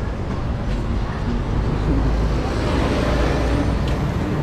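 Street background noise: a steady low rumble of traffic, with faint voices in the background.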